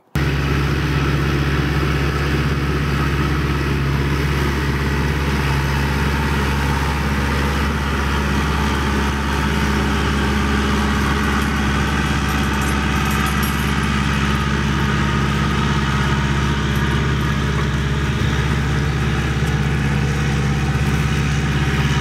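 Tractor engine running steadily at a constant speed.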